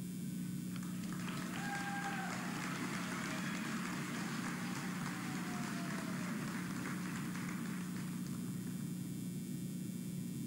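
Audience applauding. The clapping swells about a second in and fades out around eight seconds, with a couple of long drawn-out cheering whoops over it and a steady low hum from the sound system underneath.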